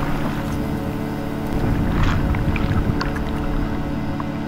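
Churning, bubbling water rushing with a low rumble and small popping ticks, over a steady droning music bed. The water noise thins out near the end while the drone carries on.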